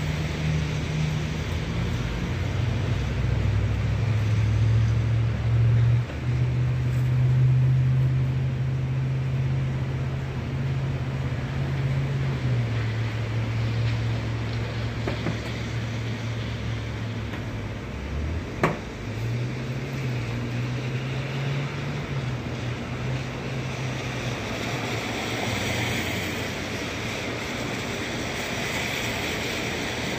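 A steady low mechanical drone that steps up and down in pitch a few times and fades near the end, over a faint even hiss, with one sharp click about two-thirds of the way through.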